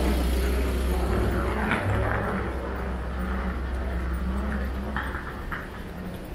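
A motor vehicle's engine running close by, a steady low rumble that eases off somewhat in the second half. A couple of light clicks come near the end.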